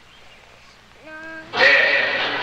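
Speech only: a small girl's voice says one short word, then at about a second and a half a man's loud, echoing voice begins a launch-style countdown.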